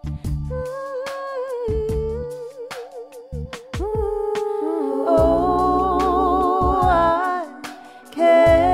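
Female solo voice humming and singing a slow, wordless melody with wide vibrato, moving up to a higher held line about four seconds in. Beneath it, a soft accompaniment sounds low chords every second or two.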